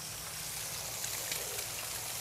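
Eggs, burgers and bacon frying on a Blackstone flat-top griddle: a steady sizzle with a few faint crackles.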